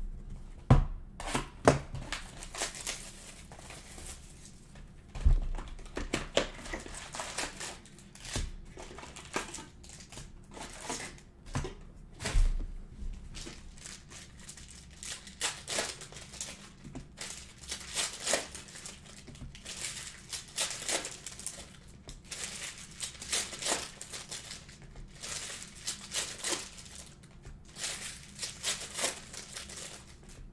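Foil trading-card packs from a Panini Prizm box being handled and torn open by hand: irregular crinkling and tearing of the wrappers throughout, with a few dull thumps against the table in the first half.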